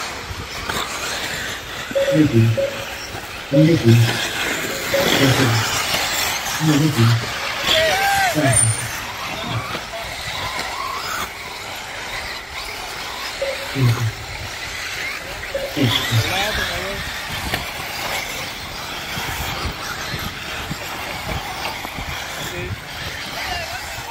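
Off-road RC buggies running around a dirt race track, a steady noisy background with a few brief rising and falling whines. A man's voice breaks in with short bursts every second or two, mostly in the first half.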